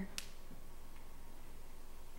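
A single short, sharp click just after the start, then quiet room tone with a faint steady low hum.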